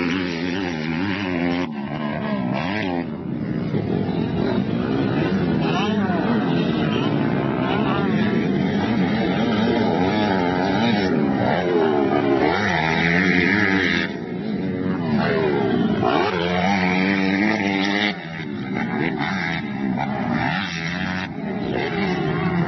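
Four-stroke motocross bike engine revving up and falling back again and again as the throttle is opened and chopped. The sound changes abruptly about 14 and 18 seconds in.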